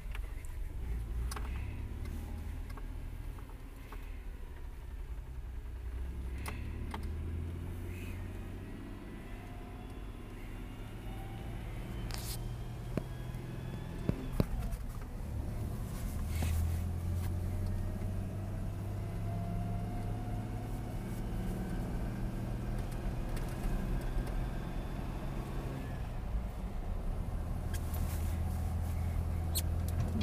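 Car engine heard from inside the cabin while driving through the gears, its pitch climbing in two long stretches of acceleration, with a tick audible between the gear shifts. Several short sharp clicks stand out along the way.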